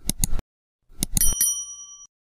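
A small bell, like a bicycle bell, rung in two quick runs of strikes. The second run leaves a clear ringing tone that fades away.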